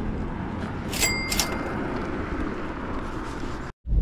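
Steady outdoor background noise, with two sharp clicks and a short high beep about a second in.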